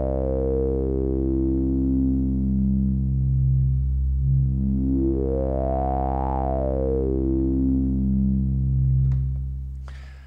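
Analog modular synthesizer's resonant state variable filter (Synthesizers.com Q107a) swept over a held low sawtooth note. The resonant peak picks out one harmonic after another, stepping down the overtones, then up high, then back down, like an arpeggio of the note's own harmonics. The note fades out near the end.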